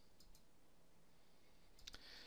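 Near silence: room tone with a few faint clicks, two just after the start and a sharper pair near the end.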